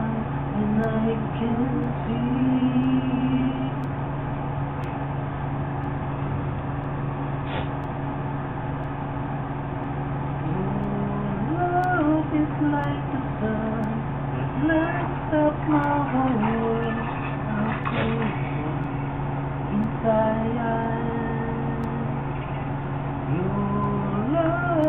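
A man's voice singing a melody in held and sliding notes, without clear words, with a break of several seconds a few seconds in. A steady low hum runs underneath.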